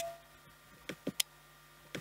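The relay inside a TS011F Zigbee smart plug, held right against the microphone, clicking as the plug is switched on and off remotely: a few sharp clicks, the first the loudest with a brief ringing tone after it.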